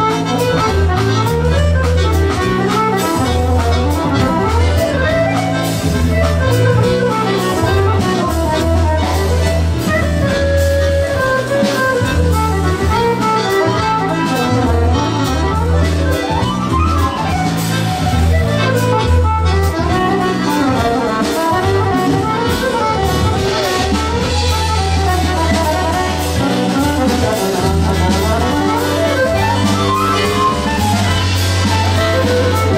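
Two accordions, one a Maugein, playing a musette waltz live together, with drum kit and bass accompaniment.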